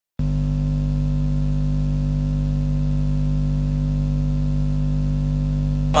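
Steady electrical hum and hiss from the recording: a constant drone made of several fixed low tones under a layer of hiss, unchanging throughout. A man's voice starts right at the very end.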